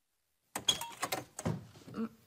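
A wooden interior door being opened by its round knob. The knob turns and the latch clicks, making a short run of sharp clicks and rattles that starts about half a second in.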